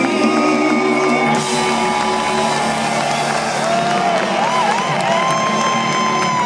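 A live rock band holds a chord at the end of a song while the concert crowd cheers and whoops, the cheering swelling about a second and a half in.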